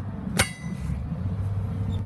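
A single sharp metallic clink about half a second in, ringing briefly, as the wire keeper is fitted onto the steel spreader pin of a trench shield, over a low steady rumble.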